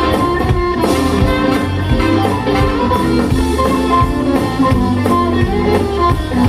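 Live blues band playing an instrumental passage on drum kit, electric bass and electric guitar, with a steady beat and no singing.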